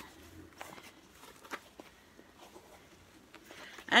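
Faint rustling and a few light clicks as a plush dog toy is squeezed and turned over in the hands; the toy gives no squeak.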